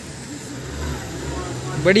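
A vehicle engine idling with a steady low hum, with faint voices around it.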